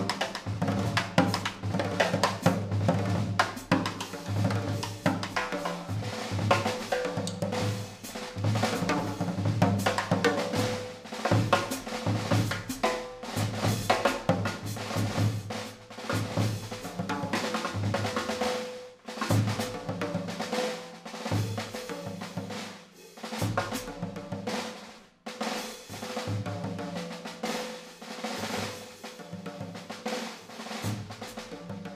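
Jazz drum kit played with sticks: fast, busy snare strokes and rolls with cymbal and bass drum hits, easing briefly a couple of times.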